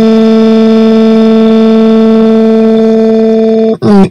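A synthesized text-to-speech voice holding one long vowel at a fixed, unwavering pitch, loud and unbroken, that cuts off shortly before the end.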